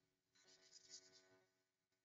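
Near silence: faint steady background hum, with one or two faint soft ticks a little under a second in.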